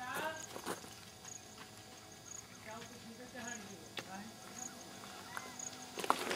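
Faint, distant voices talking, with a few sharp clicks, the loudest about four seconds in.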